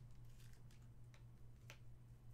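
Faint handling of a gold foil cardboard card box as its lid comes off: a few soft clicks and scrapes of cardboard, over a steady low hum.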